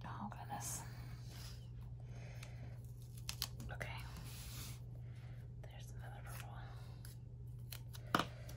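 Craft knife scoring sticker paper along a clear plastic ruler, then the sticker sheet and ruler being lifted and rustled, with a few light clicks about three seconds in and near the end. A steady low hum runs underneath.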